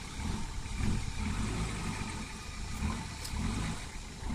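Nissan Patrol 4x4's engine running at low revs as it crawls over rocks, the revs swelling and easing unevenly.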